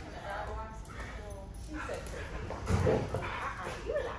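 A dog barking and vocalizing while it plays tug, loudest about three seconds in, with a woman's voice early on.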